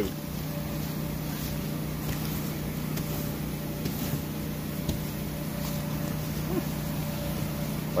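Electric inflation blower keeping an inflatable water slide up, running with a steady hum.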